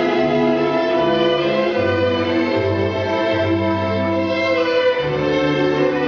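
Recorded orchestral accompaniment led by strings playing slow, sustained notes over a bass line that moves about once a second.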